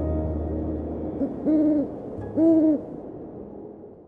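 Ambient outro music fading out, with two owl hoots about a second apart in the middle.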